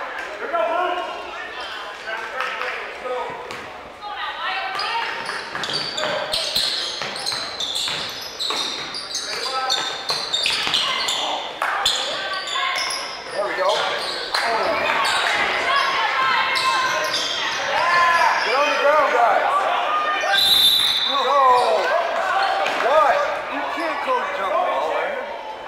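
Basketball game sounds in a large gym: a ball dribbled on the hardwood, with players and spectators calling out. A short, high referee's whistle sounds about twenty seconds in.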